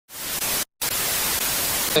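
Loud, even static hiss that cuts out completely for a split second about two-thirds of a second in, then comes back.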